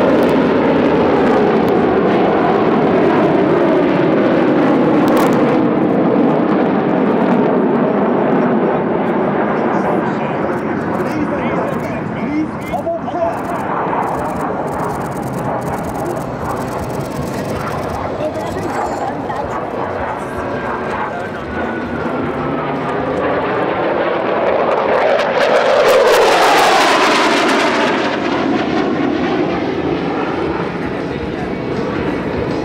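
Jet engines of a formation of KAI T-50B Golden Eagle display jets flying overhead: a steady jet roar that swells to its loudest near the end as the formation passes close by.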